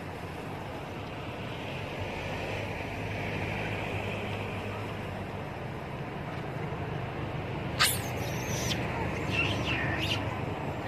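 Steady low engine hum of a motor vehicle running nearby. A single sharp, high squeal comes about eight seconds in, and a few brief high chirps follow near the end.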